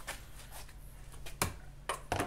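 Quiet room tone with a steady low hum, broken by one sharp click about one and a half seconds in and a couple of faint ticks near the end.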